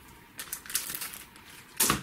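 Plastic comic-book bags crinkling and rustling as bagged comics are slid through by hand: a run of small crisp crackles, with a louder rustle just before the end.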